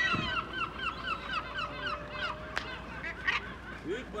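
Gulls calling in a fast run of short, repeated notes, about five a second, that thins out to a few fainter calls after about two seconds.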